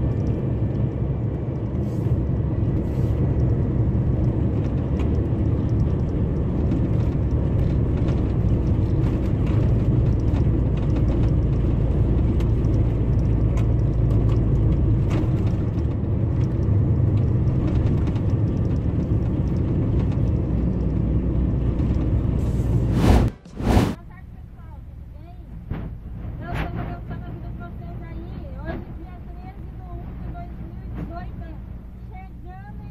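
Truck diesel engine running at road speed, heard inside the cab as a steady heavy drone. About 23 seconds in, two sharp clicks cut it off and a quieter, lower drone follows.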